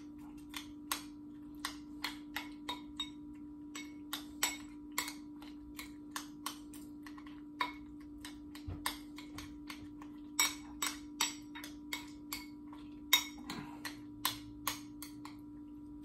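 Metal utensil clicking and scraping against a glass bowl while fried eggs are cut up and eaten, in irregular sharp clicks a few times a second, with a steady low hum underneath.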